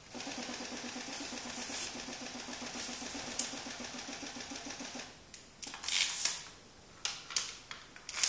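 Fischertechnik pinball machine: a small electric motor runs with a fast, even pulse for about five seconds and then stops, followed by several sharp clicks and clacks as the flippers are worked and the ball moves.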